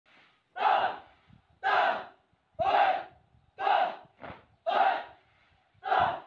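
A squad of soldiers shouting in unison in a marching cadence, about one short shout a second.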